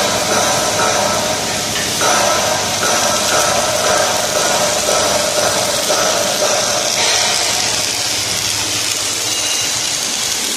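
Electric arc welding on a steel beam: a continuous hiss over a steady machine hum, the sound shifting slightly about two seconds in and again about seven seconds in.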